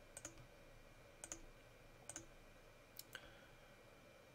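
Faint clicking of a computer mouse: four quick double clicks about a second apart, over near-silent room tone.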